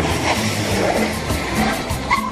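Background music with a car sound effect over it: a taxi's engine and tyres as it pulls to a stop.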